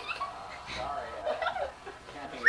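A little girl's high-pitched squeals and giggles, in short broken sounds.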